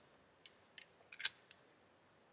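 Metal cup lid of a GAAHLERI Mobius airbrush being fitted onto its chrome-plated gravity cup: about five small, sharp metallic clicks, the loudest a little past a second in.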